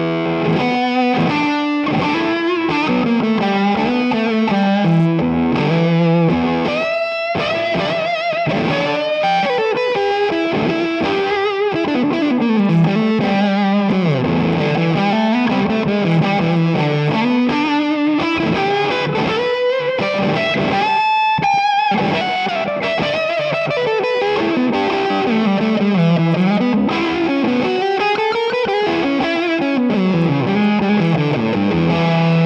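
Josh Williams Mockingbird semi-hollow electric guitar played through fuzz: a distorted single-note lead with string bends and quick runs.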